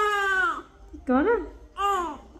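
A baby crying in three high-pitched wails: a long one at the start, a shorter one rising and falling about a second in, and another short one near the end.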